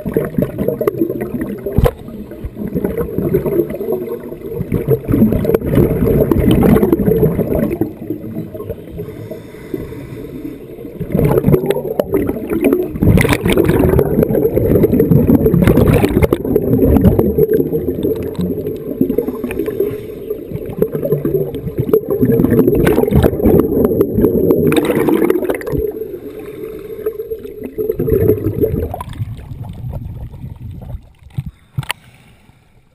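Muffled underwater rumble and gurgling, as heard through a camera's waterproof housing, with repeated louder surges of scuba exhaust bubbles. The low rumble drops away shortly before the end as the camera breaks the surface.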